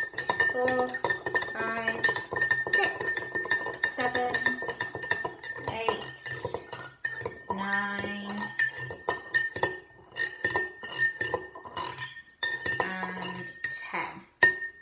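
A metal tablespoon stirring salt into water in a drinking glass, clinking repeatedly against the glass as the salt dissolves into a salt-water solution.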